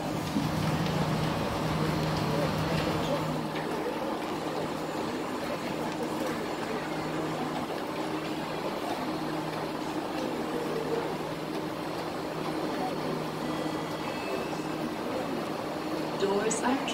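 Singapore MRT train running, heard inside the carriage: a steady hum over rumbling cabin noise, strongest in the first few seconds, with murmured passenger chatter in the background.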